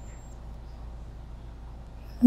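Steady low hum under faint even hiss, with no distinct sound event: background room tone.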